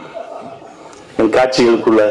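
A brief pause with faint room noise, then a man chuckling close into the microphone from about a second in.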